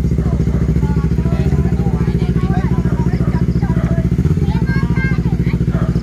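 Sport motorcycle engine idling loudly and steadily with an even, rapid pulse.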